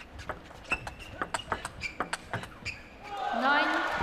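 A table tennis rally: the celluloid-type plastic ball clicks off the rackets and bounces on the table in quick alternation, several strikes a second, for about three seconds. Near the end a voice rises as the point finishes.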